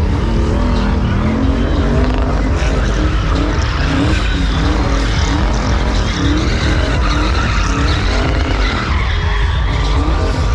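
Car doing a burnout: the V8-style engine is revved hard in quick repeated rises and falls while the rear tyres spin and squeal on the pavement.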